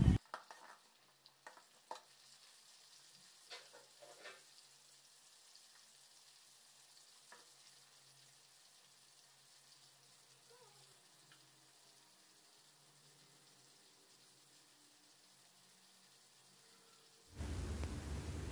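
Shallots and dried red chillies frying in oil in an aluminium kadai, a faint steady sizzle. A few clicks and scrapes of the metal ladle against the pan come in the first few seconds, then only the frying.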